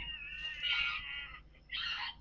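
A high-pitched, drawn-out wailing cry lasting over a second, then a second, shorter cry near the end.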